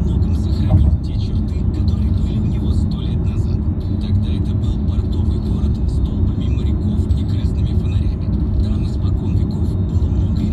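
Steady low rumble of a car driving at highway speed, heard from inside the cabin, with a voice talking over it.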